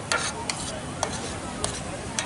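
Steel utensils clinking: about five short, sharp clicks at uneven intervals over steady background noise.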